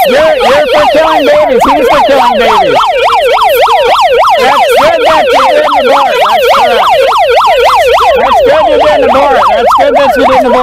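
A handheld megaphone's built-in siren sounding at close range, aimed at the microphone. It gives a fast yelp that sweeps up and down in pitch about four times a second, steady and very loud.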